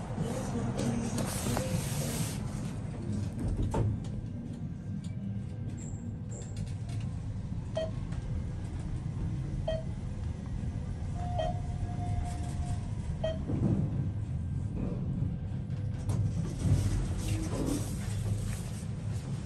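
ThyssenKrupp Evolution 200 machine-room-less traction elevator heard from inside the car as it rides: a steady low rumble of travel, with a few short electronic beeps and one held tone partway through.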